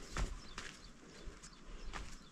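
Footsteps of a walker on a rough stone trail, about four crunching steps at a walking pace, the first one the loudest.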